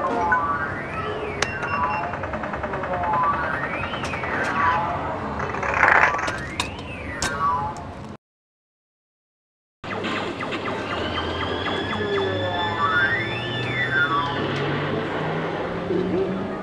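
Arcade game machines' electronic sound effects: a pitch that sweeps up and down, repeating about every second and a half, over a jumble of jingles, tones and clicks. The sound drops out for about a second and a half some eight seconds in, then the machine sounds resume.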